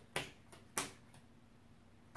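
Playing cards snapped down onto a tabletop one at a time: two sharp snaps a little over half a second apart, with fainter ticks between.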